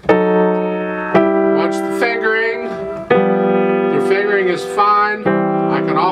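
Grand piano played with both hands: four sustained chords, a new one struck at the start and then roughly one, three and five seconds in, each left to ring.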